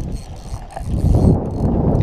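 Spinning reel being cranked to reel in a hooked pompano, a fast mechanical rattle of its gears that gets louder about a second in.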